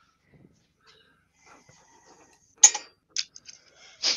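Mostly quiet, with one sharp click about two and a half seconds in, followed by a few fainter clicks and taps.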